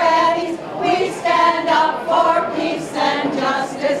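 A group of older women singing a protest song together, unaccompanied, in sustained sung phrases.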